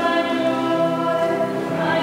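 A hymn sung by a choir, with long held notes moving from chord to chord.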